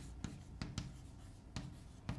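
Chalk writing on a chalkboard: a series of faint, short taps and scratches as a word is written stroke by stroke.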